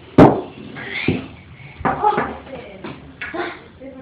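A single sharp knock about a quarter of a second in, the loudest sound, followed by short bits of voice.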